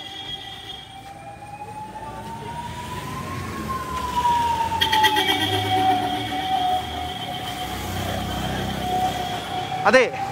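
Ambulance siren wailing in a slow rise and fall of pitch, growing louder as the ambulance drives past, with its engine rumbling underneath in the second half.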